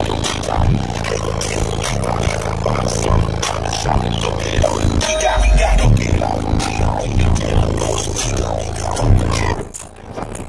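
Car audio system playing music very loud through four Sundown Audio ZV4 15-inch subwoofers, the deep bass pulsing to the beat. The bass cuts off just before the end.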